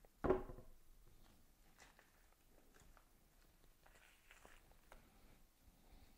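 A brief vocal sound at the start, then faint sticky peeling and soft rubbery creaks and clicks as silicone rubber mold halves are pried apart and peeled back off a fresh flexible foam cast.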